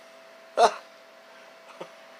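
A man's single brief wordless vocal sound about half a second in, over a faint steady hum.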